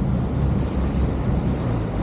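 A motor boat's engine running steadily under way, with water rushing in its churning wake and wind on the microphone.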